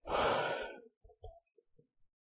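A person's long exhaled sigh lasting just under a second, followed by a few faint short clicks.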